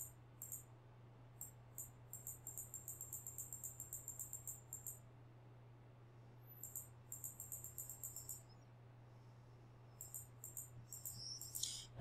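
Faint computer-mouse clicks in quick runs of about five small ticks a second, in three bursts, over a low steady electrical hum.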